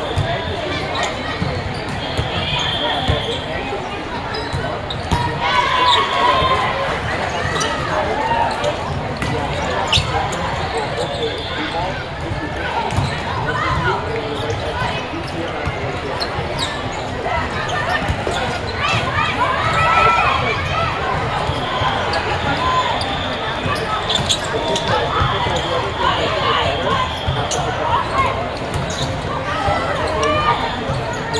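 Indoor volleyball being played in a big echoing hall: the ball is struck again and again with sharp slaps, over a steady din of players' and spectators' voices from the surrounding courts.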